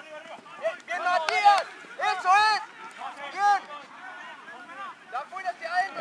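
Men's voices shouting calls across an open pitch during a rugby defence drill, with two loud shouts about one and two seconds in and quieter calls after.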